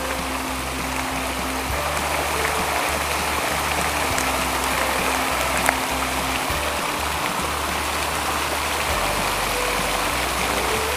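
Steady rush of water pouring down a water-feature wall, with quiet background music's low notes underneath. A single sharp click a little past halfway.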